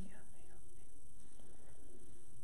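Faint whispering over a steady low background hiss.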